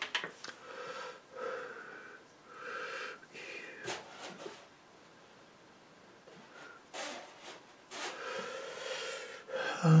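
A man's breathing close to the microphone: several slow breaths, with a quieter pause in the middle, and a few faint clicks.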